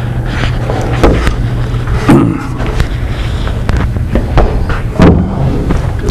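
A handful of knocks and clatters from a wooden router-table fence being handled and set down, over a steady low hum.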